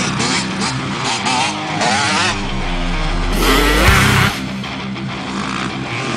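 Honda CRF dirt bike engine revving up and down, mixed with loud rock music.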